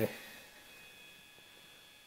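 Near silence: quiet room tone with a faint steady high-pitched electronic whine, just after the last word of a man's sentence ends.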